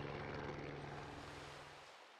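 Helicopter engine and rotor running steadily, heard from aboard, with a low hum and fast flutter that fades away just before the end.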